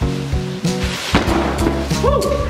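Drywall sheets being smashed: one loud crash about a second in, followed by the rattle and crumble of breaking gypsum board, over background music.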